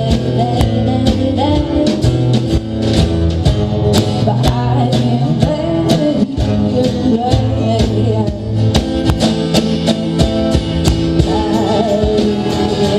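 Live band music: acoustic guitars strummed over a steady drum beat, with a voice singing the melody.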